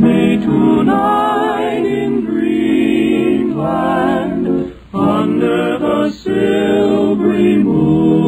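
Male barbershop quartet singing a cappella in close four-part harmony, the held chords broken by two short pauses between phrases near the middle.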